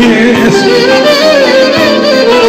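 Live Greek folk music: a male voice ends a sung line about half a second in, then the clarinet carries a winding, ornamented melody over the band.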